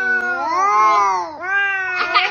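Cat yowling in long, wavering calls that rise and fall in pitch. One call breaks off about a second and a half in, and another begins right after.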